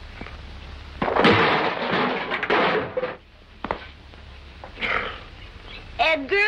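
A man lunging and landing hard on the ground: a scraping crash about a second in that lasts a couple of seconds, followed by a few small knocks and a short hiss near the end, over a steady low hum from the old film soundtrack.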